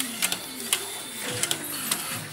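DTF printer at work: the print-head carriage runs and its mechanism whirs, with a few sharp clicks along the way.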